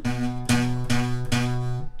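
Acoustic guitar strummed four times, about half a second apart, on an E minor chord with buzzing strings. The buzz is most likely caused by the strings not being held down tightly enough.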